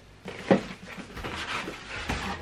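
A cardboard subscription box being opened by hand: a sharp knock about half a second in as the lid comes up, then paper crackling and rustling as the packing note inside is handled.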